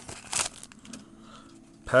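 Foil wrapper of a trading-card pack crinkling in a short burst as it is torn open, then faint rustling as the cards are drawn out.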